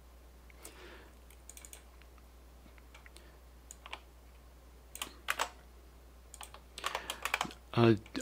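Computer keyboard keystrokes in short, scattered runs that come faster near the end.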